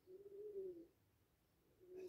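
Faint call of a bird: one soft note that rises a little and falls back, just under a second long.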